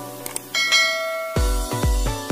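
Electronic background music: a bright bell-like chime rings about half a second in. Then a heavy beat with deep bass kicks comes in, about two a second.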